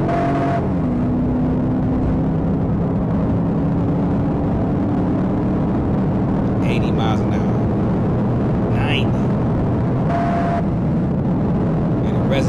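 A police patrol car driving at high speed, heard from inside the cabin: a steady engine drone with road noise while it accelerates. Two short beeps sound, one at the start and one about ten seconds in.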